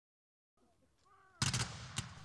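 A ragged volley of black-powder muskets fired by a line of infantry reenactors. The shots come as a quick cluster of sharp cracks about one and a half seconds in and then die away.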